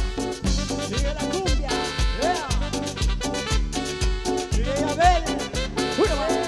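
Live cumbia band playing an instrumental passage on keyboard, electric guitars and drums. A heavy bass beat falls about twice a second under melody lines that slide up and down in pitch.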